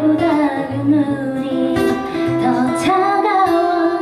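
Live pop ballad: a woman singing long, held notes, accompanied by guitar and keyboard.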